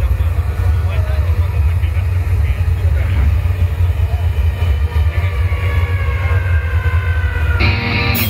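A steady deep bass drone with crowd voices over it in a concert hall. Near the end, the band comes in with loud distorted electric guitar chords, opening a heavy metal song.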